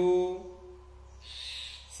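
A man's voice drawing out a long 'oo' vowel at the end of a spoken word, fading out within the first second. A brief breath follows before he speaks again.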